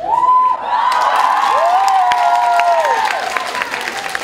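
Audience cheering and applauding after a joke, with two long high-pitched squeals held over the crowd noise and claps.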